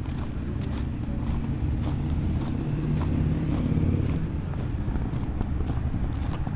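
Footsteps crunching on gravel at a walking pace, about two a second, over a steady low rumble that swells briefly in the middle.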